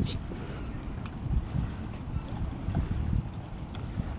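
Wind buffeting the microphone: a low, uneven rumble with no steady engine note, and a brief click right at the start.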